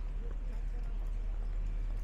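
Footsteps clicking irregularly on a block-paved sidewalk over a steady low rumble of the street.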